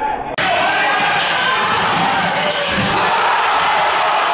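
Basketball game in a gym: a ball bouncing on the court amid voices, then a sudden jump about half a second in to a loud, steady crowd din with faint high squeaks.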